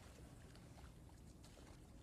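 Faint splashing of a swimmer's strokes in river water, with low hiss beneath.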